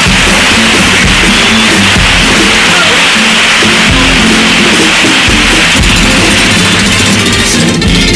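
A carnival comparsa's instrumental accompaniment of Spanish guitars and drums plays a loud, steady passage between sung verses, with no singing.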